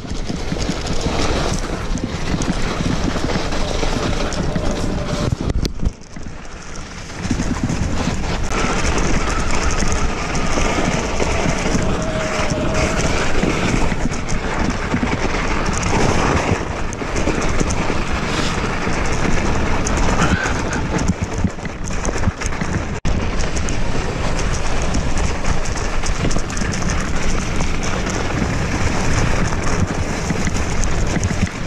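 Steady rushing noise of an e-mountain bike riding a trail of thawing snow: tyres on the wet snow, the bike's running noise and wind on the camera. There is a brief quieter dip about six seconds in.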